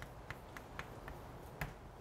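Chalk tapping and clicking on a blackboard while an equation is written: a handful of short, sharp clicks, the loudest about a second and a half in.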